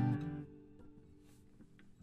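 Taylor steel-string acoustic guitar ringing on an open G chord played with no capo, dying away within about half a second and leaving only faint room quiet.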